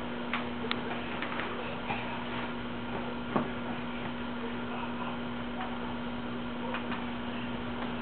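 A steady low hum with scattered light clicks and taps from a dog and a toddler stepping about on a hard floor, one sharper tap about halfway through.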